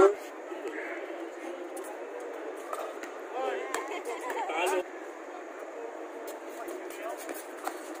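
Chatter of players and onlookers around an outdoor basketball court, with one voice calling out more clearly from about three and a half to five seconds in.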